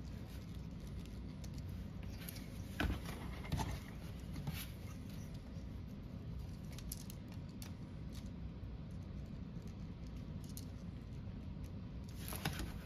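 Faint clicks and taps of small toy-robot parts being handled and pressed together onto pegs, a few sharper clicks about three to five seconds in and again around seven seconds, over a low steady hum.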